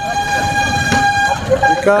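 A vehicle horn sounding one long steady note that cuts off about a second and a half in, followed by a brief second toot, over a low traffic rumble.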